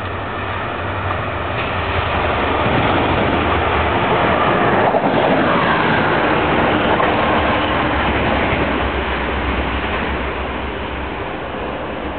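Vossloh G2000 diesel locomotive running past at close range, its engine rising to a peak as it draws level about four to six seconds in, with a falling pitch as it goes by. The train's running noise then fades.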